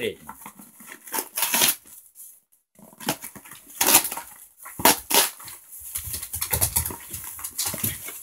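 Plastic packaging crinkling and rustling in short spells as a parcel is handled, with a dog making noise close by. A brief near-silent pause comes about two seconds in.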